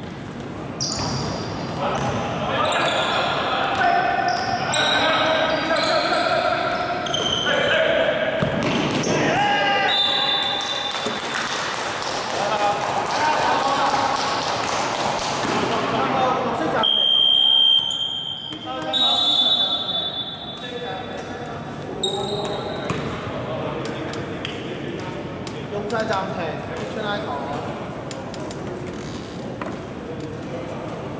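Indoor basketball game sounds in a gymnasium: a basketball bouncing on the court and players and bench voices talking and calling out throughout. A loud, shrill whistle blast of about a second comes just past the middle.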